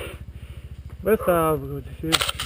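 Dirt bike engine idling with an even low pulsing beat. A man's voice calls out briefly about a second in.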